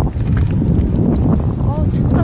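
Strong wind buffeting the microphone in a steady low rumble, with a few light clicks.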